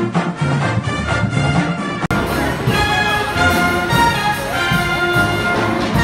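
Recorded music with a steady beat, then an abrupt cut about two seconds in to a live pep band whose trumpets and trombones play long held chords.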